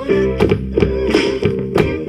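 Recorded music with a steady beat and plucked guitar-like notes, played from a phone through the Sylvania SP770 BoomBox speaker's auxiliary input.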